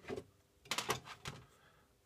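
A few light clicks and scrapes as plastic model freight wagons are slid and set down on a sheet-metal tabletop, bunched in the first second and a half.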